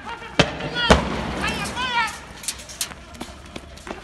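Shots from riot-police weapons: two loud, sharp bangs about half a second apart near the start, then several fainter ones. Men shout between the shots.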